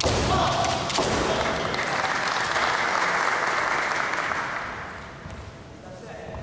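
Kendo bout: a bamboo shinai strike cracks with a fighter's shout, a second strike comes about a second in, then a few seconds of loud sustained noise from the hall that fades away near the end.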